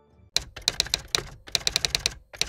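Typing sound effect: a quick run of sharp key clicks, about a dozen, in two bursts with a short gap between them.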